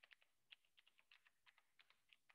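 Faint typing on a computer keyboard: quick, irregular keystrokes, several per second.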